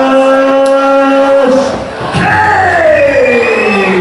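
A man yelling: one long shout held on a steady pitch that breaks off about a second and a half in, then a second long shout that slides down in pitch.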